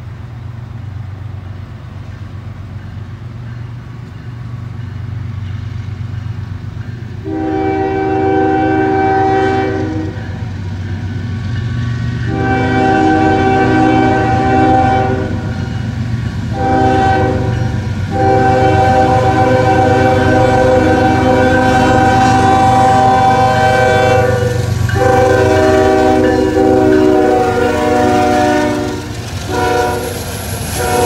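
CN freight train's lead diesel locomotive approaching a grade crossing and blowing its multi-tone air horn in the crossing pattern: two long blasts, a short one, then a long one held almost to the end. Under the horn is the rumble of the diesel engines, growing louder as the train draws near.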